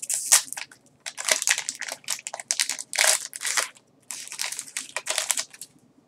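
Crinkling and rustling of a foil booster-pack wrapper and trading cards being handled, in quick runs with short pauses, stopping just before the end.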